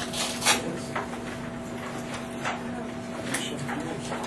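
Room noise with a steady hum and a few scattered sharp clicks and knocks, the loudest about half a second in.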